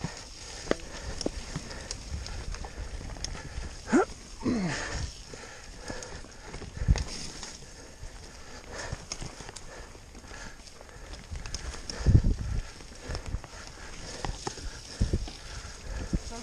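Mountain bike ridden fast down a rough dirt trail: the tyres and bike clatter over roots and ruts, with a heavy knock from a bump about seven seconds in and again about twelve seconds in. A short vocal cry is heard about four seconds in.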